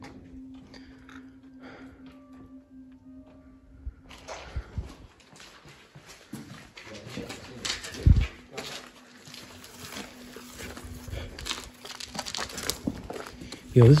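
Footsteps and rustling as people walk over debris with a handheld camera: irregular scuffs and clicks from about four seconds in, and a heavy bump about eight seconds in. A low steady hum runs through the first few seconds.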